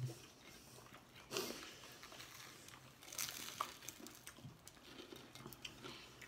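Quiet eating sounds: chewing and a few crunching bites of food, heard as scattered short crackles over a quiet room.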